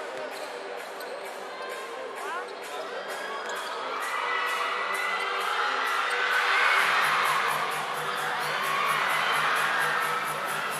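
Crowd in a gym shouting and cheering, swelling about four seconds in and loudest around seven seconds, over background music with a steady beat.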